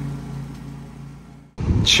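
Mower engine running at a steady pitch, fading away and then cut off abruptly about one and a half seconds in.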